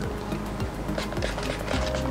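Background music: an instrumental bed with sustained low notes and a steady bass.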